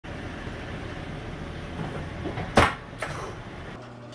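A car's engine running in a garage, with a sharp loud knock about two and a half seconds in and a lighter knock half a second later; the sound cuts off abruptly just before the end.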